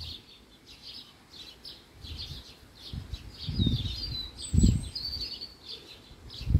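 Small birds chirping in quick repeated notes, with a longer warbling trill about four to five seconds in. A few low thumps sound over them, the loudest about four and a half seconds in.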